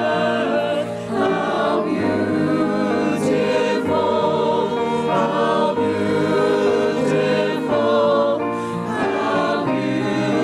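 A choir singing sacred music in parts, with held chords that change about once a second.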